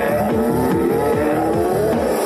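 Electronic dance music: a steady bass beat under synth tones gliding upward in pitch.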